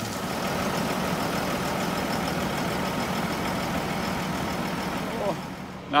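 Tractor engine idling steadily, dropping away shortly before the end.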